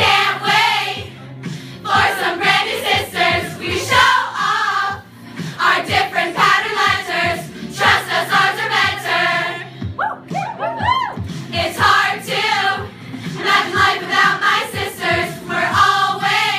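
A large group of young women singing a sorority song together in chorus, phrase after phrase. About ten seconds in, a quick high note rises and falls.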